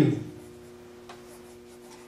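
A man's word trails off, then a pause of quiet room tone with a steady low hum and a faint tick about a second in.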